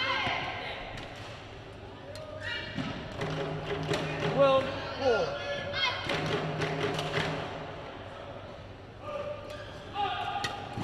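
A badminton rally: rackets striking the shuttlecock in sharp cracks, with shoes squeaking on the court.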